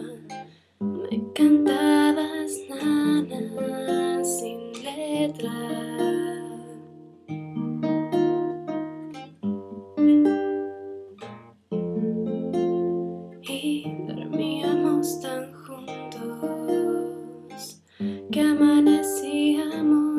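Acoustic guitar played in picked and strummed chords, ringing out phrase by phrase, with a brief pause about a second in and another about eleven seconds in.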